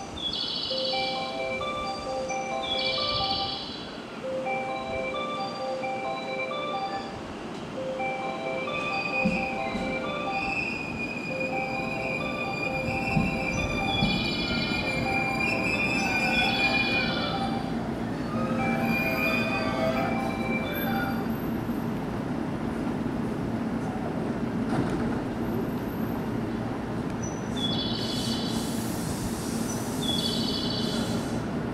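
An electric train moves along a station platform with its wheels squealing, under a repeating electronic chime melody from the platform speakers. The chime stops about two-thirds of the way through, and the train's low running sound grows steadier and louder afterwards.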